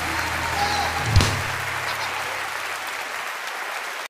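Concert audience applauding while the band's last held low note dies away about a second and a half in. One loud low thump comes about a second in.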